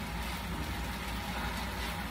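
Steady low hum with faint even hiss: room background noise in a pause between words.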